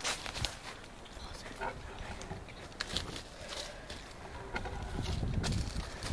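Handling noise of a camera being moved and set in place among tree branches: scattered knocks and rustling, with a low rumble building near the end, and faint voices in the background.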